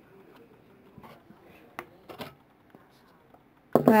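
Faint handling of a small paper water decal as fingernails peel its clear plastic sleeve off: soft rustling with a few light clicks.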